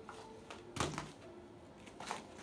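Umbrella cockatoo's beak working a thin wooden plank, with one sharp knock a little under a second in and faint scraping otherwise.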